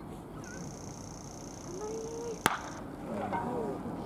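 A wooden baseball bat cracks once, sharply, against a pitched ball about two and a half seconds in, putting it in play as a ground ball to the infield.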